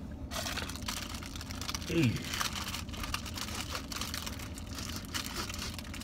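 Wrapper of an ice cream sandwich being torn open and crinkled by hand: a continuous fine crackling.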